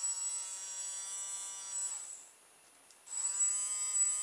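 The small electric motor of a battery-powered pet nail grinder running with a high-pitched whine, switched on and off by twisting a bent paper clip over its switch. It is switched off about two seconds in and winds down, then switched on again about a second later and spins back up.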